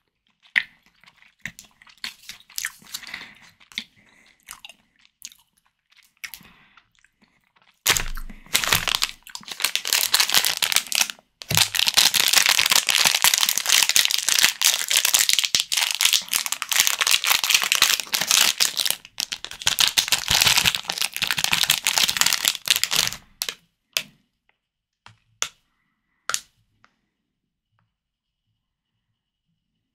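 Soft, sparse chewing clicks of jelly candy at first. About eight seconds in, a thin plastic candy wrapper starts to crinkle loudly as it is torn open and handled close to the microphone, a dense crackling that runs about fifteen seconds with a brief break. It ends with a few scattered clicks.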